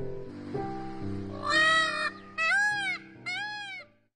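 Indian peafowl (peacock) calling three times in the second half, each call rising then falling in pitch, the first the longest. Background music with held notes plays underneath.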